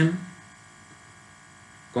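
A man's spoken word ends just after the start, then a pause filled with a faint, steady electrical hum, and speech starts again near the end.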